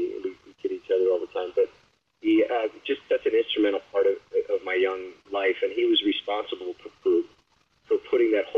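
Speech only: a man talking in an interview, with brief pauses.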